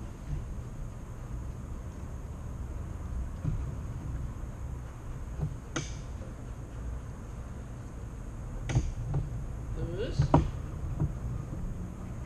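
Steady low hum of room noise in a large hall, broken by a few sharp clicks and, about ten seconds in, brief faint voice sounds.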